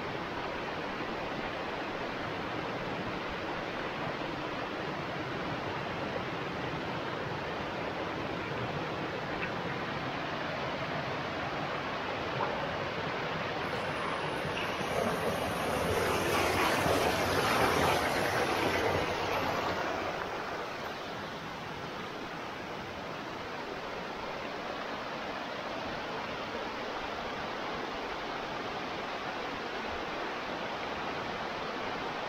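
Mountain stream tumbling over rocks in small waterfalls: a steady rush of water that swells noticeably louder for several seconds around the middle, then settles back.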